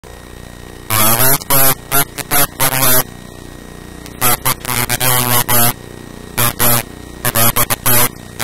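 A man speaking in short phrases over a steady background hum.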